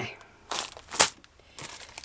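Small clear plastic zip-lock bag of glass beads being handled: a few short crinkles of the plastic, the sharpest about a second in.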